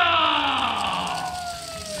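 A shouted call held as one long note, its pitch falling slowly as it fades away.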